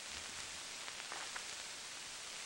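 Steady hiss of an old black-and-white television recording's soundtrack, with a few faint ticks about a second in.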